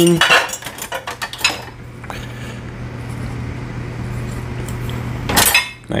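A metal spoon and ceramic dishes clinking as they are handled in a dishwasher rack, a run of sharp clinks in the first two seconds, over a steady low hum. A short noisy burst comes near the end.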